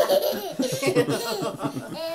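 A toddler laughing in a quick run of laughs, with a woman laughing along.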